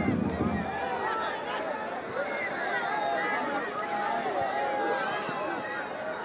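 Football stadium crowd noise: many voices shouting and calling over one another, with no single voice standing out.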